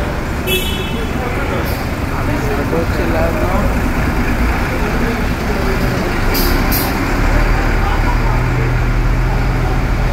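Volvo FL box truck's diesel engine running as it drives slowly past on a ferry's enclosed car deck, its low rumble growing louder about seven seconds in as it comes alongside.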